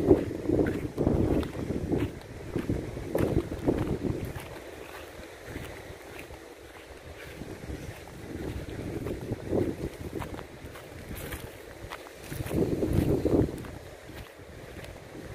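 Wind buffeting the microphone in irregular gusts, with low rumbling blasts loudest in the first few seconds and again near the end, and quieter lulls in between.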